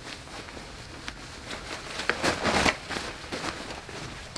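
Ripstop polyester jacket rustling as it is pulled out of its packed pocket and unfolded, with a louder swish of fabric a little past halfway.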